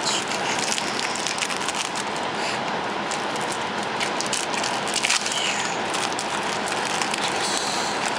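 Crinkling and crackling of foil booster-pack wrappers as Yu-Gi-Oh trading-card packs are handled and opened, with many small clicks throughout.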